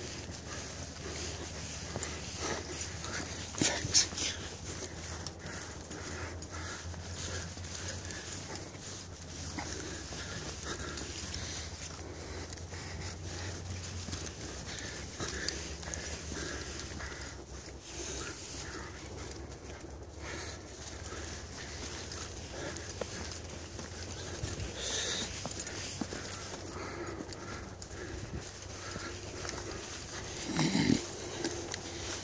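A hiker's footsteps on a grassy dirt trail, with rustling from the hand-held camera and a sharp knock about four seconds in.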